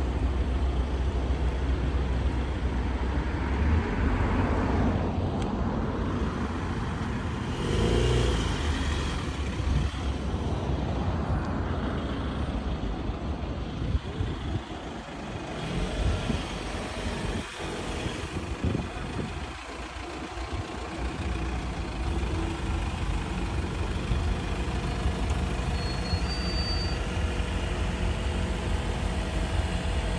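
Outdoor road traffic: vehicles passing, their noise swelling and fading over a steady low rumble.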